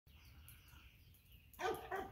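A young retriever gives a short bark about one and a half seconds in, after a faint, quiet start.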